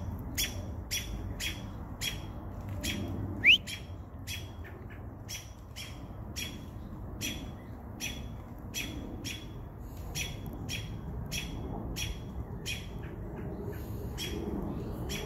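American robins giving repeated sharp alarm calls, about two a second, while mobbing a perched owl. About three and a half seconds in, a single loud rising whistle sounds.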